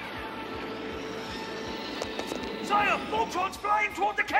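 Cartoon soundtrack: steady background music, then from a little before three seconds in a quick run of short, warbling chirps.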